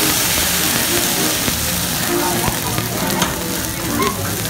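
Food and oil sizzling on a hot hibachi teppanyaki griddle, a steady dense hiss, with a couple of brief clicks in the second half.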